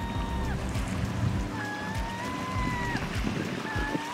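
A gull giving long drawn-out calls, about three in all, each held on one pitch and dropping at its end, over the steady wash of small waves on a pebble shore.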